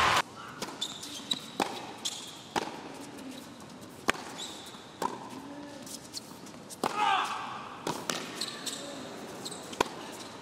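Tennis ball bounced on a hard indoor court before a serve, a series of sharp single knocks at uneven gaps, with faint voices from a hushed arena crowd between them.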